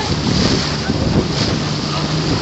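Wind buffeting the microphone over water rushing and splashing alongside an outrigger canoe being paddled, with a steady low hum underneath.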